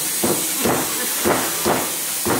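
Rhythmic knocks of food being struck on a wooden board, four in two seconds, falling roughly in pairs, over a steady hiss.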